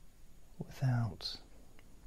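A man's soft, low voice murmuring one short word about a second in, ending in a brief hissing 's' sound.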